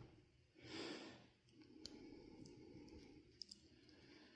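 Near silence, with a soft breath out about a second in and a few faint clicks of a small flathead screwdriver working inside a plastic wiring connector to release a terminal pin.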